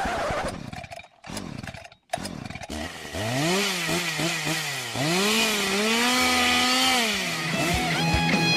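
Produced intro sound effect. A quick run of falling sweeps gives way to a brief dropout about two seconds in. Then a buzzy, revving whine climbs, holds, dips and climbs again before falling away near the end.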